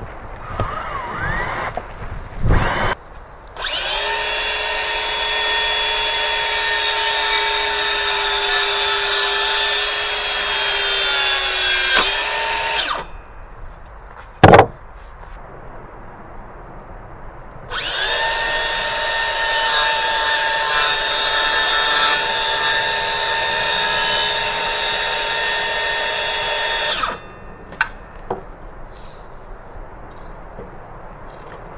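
Cordless drill running in two long, steady runs of about eight seconds each, its pitch sagging slightly as the first run ends under load. A single sharp knock comes between the runs.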